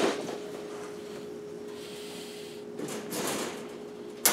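Wire rabbit cage door being worked open: a sharp metallic click of the latch at the start, then softer rattling and rustling about three seconds in. A faint steady hum runs underneath.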